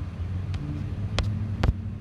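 A steady low mechanical hum, with three short clicks, the loudest near the end.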